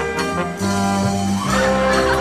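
A band playing an orchestral introduction: brass chords held over long bass notes, with a cymbal-like wash near the end.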